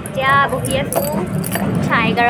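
A woman talking over a low steady hum, with light high-pitched clinks in the background.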